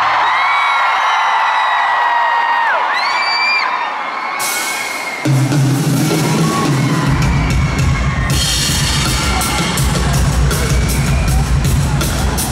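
Concert crowd screaming and whooping, then live music starts about five seconds in with a loud bass line, and drums join a few seconds later.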